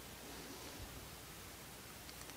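Faint steady hiss of room tone, with faint rustling from hands handling a small metal mounting plate.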